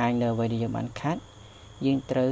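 A man's voice speaking, with a pause in the middle, over a faint steady high-pitched tone.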